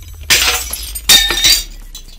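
A glass-shattering sound effect in a logo intro: two crashes about a second apart, with a ringing tail, over a low drone.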